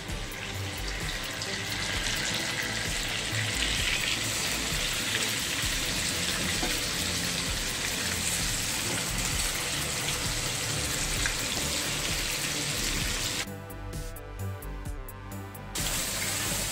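Tandoori-marinated chicken pieces sizzling in hot oil and melted butter in a kadai as they are laid in, a steady frying hiss; it drops a little and changes character about 13 seconds in.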